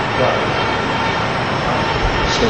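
Steady, even background noise, with a faint trace of a man's voice shortly after the start.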